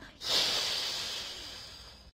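A cat hissing: one long, breathy hiss that begins a moment in and slowly fades.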